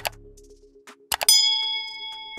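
Subscribe-animation sound effects: a click at the start, then a few quick mouse clicks just past a second in, followed by a bell ding that rings on steadily for about a second.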